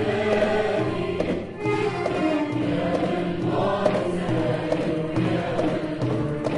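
Arab music ensemble playing, with a choir of voices singing together over violins and other strings. There is a short break between phrases about one and a half seconds in.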